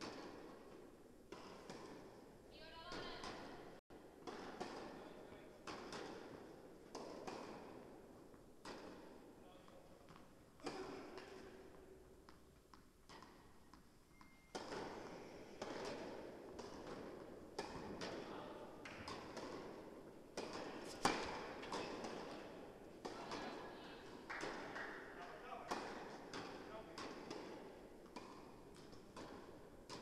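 Tennis ball struck by rackets and bouncing on the court, each knock echoing in a large indoor tennis hall; the sharpest knock comes about two-thirds of the way through. Indistinct voices are heard in the hall.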